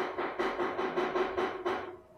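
A fast, even pulsing electronic sound, about six beats a second, each beat carrying the same pitched note, picked up through a video-call microphone. It stops just before the end.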